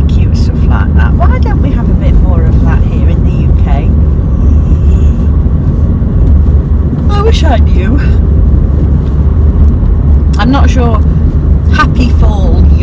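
Steady low rumble of a car's engine and road noise heard from inside the cabin while driving, with a woman's voice talking at times over it.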